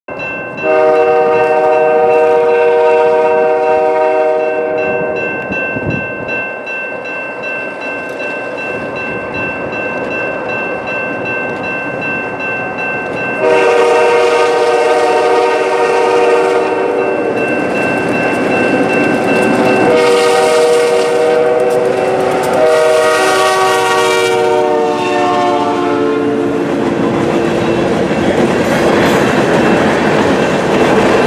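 Air horn of an approaching CP GP38 diesel locomotive sounding four chord blasts: long, long, a shorter one, then a long one that drops in pitch as the locomotive passes. After the horn, the freight cars roll by with a loud, rising clatter of wheels on rail.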